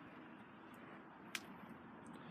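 Near silence: faint, steady outdoor background noise, with one brief faint click about one and a half seconds in.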